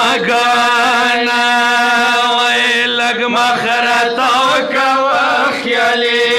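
Two male voices chanting a noha, a Shia mourning lament, in unison into microphones, unaccompanied, with long held notes and wavering ornaments.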